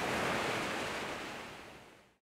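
Ocean surf washing steadily, fading out gradually over the two seconds.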